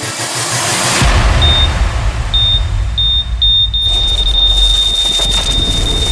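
Sound effects of an animated logo intro: a hissing wash that fades, then a low rumble under a high electronic beep that sounds a few times, quickening, and then holds as one steady tone.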